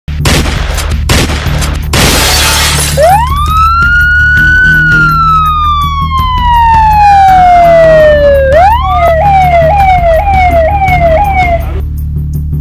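A few sharp hits and a crash of breaking glass, then a police siren: one long wail that rises and slowly falls, followed by a faster yelp of short repeated sweeps, about two a second, that cuts off near the end. A steady low music drone runs underneath.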